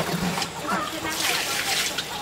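Water slopping and splashing out of a plastic bucket as it is tipped over, a hissy splash lasting just under a second in the second half.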